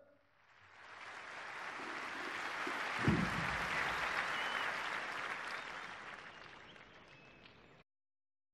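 Large crowd applauding, swelling over the first few seconds and then fading away, with a brief low thump about three seconds in; the sound cuts off suddenly near the end.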